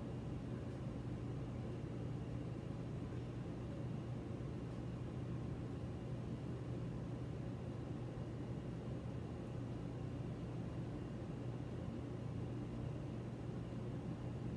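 Steady low hum with a faint hiss, unchanging throughout.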